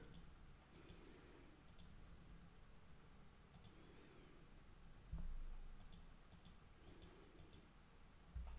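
Faint computer mouse clicks, about a dozen scattered through near silence, from clicking to add areas to a quick selection. A soft low thump comes about five seconds in.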